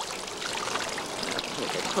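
Water running from a garden hose into a sink, splashing as a fish is rinsed under the stream.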